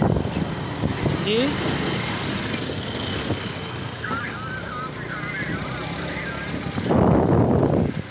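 Motorcycle ride on a rough dirt road: steady engine and road rumble with wind on the microphone. The noise swells to a louder rush about seven seconds in.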